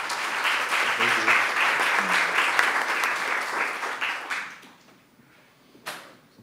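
Audience applauding, dying away about four and a half seconds in, with a sharp click near the end.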